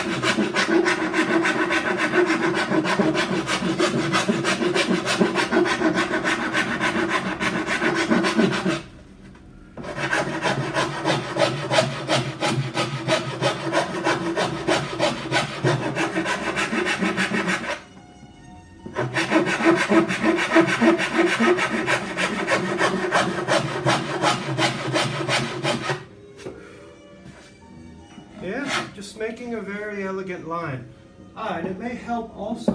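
Hand file rasping along the edge of a cello's flamed maple back plate in rapid back-and-forth strokes, trimming the plate's overhang down toward the ribs during rough edgework. The filing comes in three runs, broken by short pauses about 9 and 18 seconds in, and stops about 26 seconds in.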